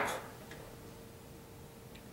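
A pause in a man's speech: quiet room tone with a faint steady hum, his last word just dying away at the start.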